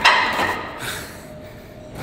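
Gym machine's loaded weights clanking down as a set ends: one loud metal clank that rings off over about half a second, then a smaller knock just under a second later.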